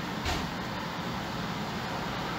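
Steady background noise, a low hum under an even hiss, with one brief click about a quarter of a second in.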